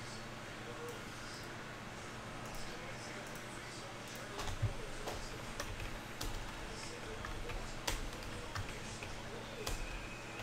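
Scattered faint clicks from a computer mouse and keyboard as names are pasted into a spreadsheet, a few sharper ones about halfway through and near the end, over a steady low hum.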